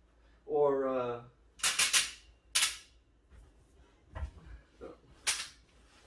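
Sharp clicks and knocks from the folding sofa bed's metal frame and backrest hinges as the upholstered backrest is raised and folded: a quick run of three clicks about a second and a half in, another soon after, a couple of duller thumps, and one more click near the end.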